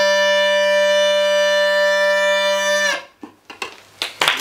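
Bagpipe playing one held note over its steady drone, then the sound stops about three seconds in, the pitch sagging slightly as it dies away. A few faint knocks follow in the quiet.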